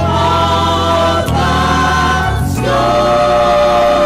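Gospel choir singing sustained chords, moving to new notes about a second in and again a little past halfway.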